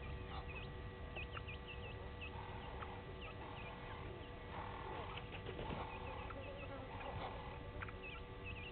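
Natal spurfowl hen and chicks calling: runs of short high peeps near the start and again at the end, with soft lower clucking calls through the middle.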